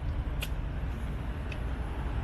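Low, uneven rumble of wind and road noise on a bicycle-mounted action camera as the bike rolls along, with two sharp clicks about a second apart.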